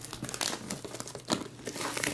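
Plastic shrink wrap crinkling as it is pulled off a sealed trading-card box, a run of irregular crackles.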